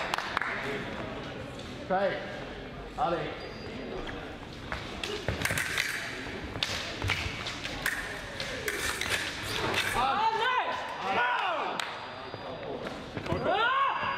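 Fencing bout: sharp clicks and thuds of feet stamping on the metal piste and blades striking, then loud shouts from the fencers about ten seconds in and again near the end.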